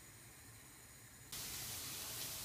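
Near silence, then about a second in a steady sizzling hiss starts abruptly: diced onion and celery frying in oil in a pan.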